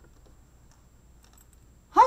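Quiet room tone with a few faint, small clicks scattered through it, then a woman's voice starts right at the end.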